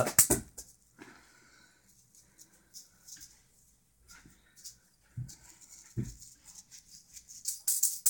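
Scattered faint rattles and handling clicks from glittery wire-wrapped juggling balls being gathered up after a drop, with two soft thumps about five and six seconds in. Near the end the balls' rattling builds again as juggling restarts.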